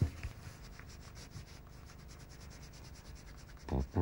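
A crayon rubbing on a sheet of paper on a table: faint, rapid scratchy strokes, with a knock at the start and a couple of soft thumps near the end.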